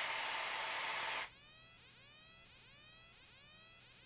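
Faint hiss on the cockpit headset and radio audio feed that cuts off about a second in, followed by faint, thin rising chirps repeating every half second or so.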